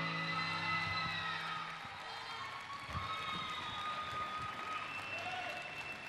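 The final chord of the huella music rings out and dies away over the first two seconds, as an audience applauds and cheers, with scattered shouts and whistles over the clapping.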